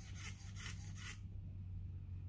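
The back of a hobby knife blade scraped back and forth across a painted plastic model-kit sprue: faint, quick scraping strokes about four to five a second, stopping a little over a second in. The blade is held upright and slid sideways to scrape the paint off the gluing surfaces so the glue will hold.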